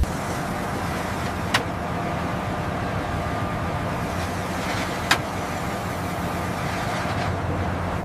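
Steady rumble and hum of heavy machinery as a sensor is lowered on a cable into a borehole, with two sharp clicks, one about a second and a half in and one about five seconds in.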